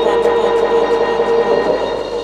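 Electronic dance music from the DJ set in a breakdown: a loud, sustained droning chord that holds one pitch. Faint, evenly spaced hi-hat ticks fade away early on, and there is no kick drum.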